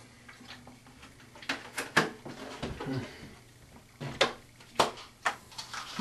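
Scattered short clicks and knocks of small items being handled at a bathroom sink, about half a dozen spread over a few seconds.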